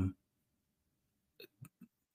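A pause in a man's talk: silence, then about three faint, very short mouth clicks and breath sounds near the end, as he gets ready to speak again.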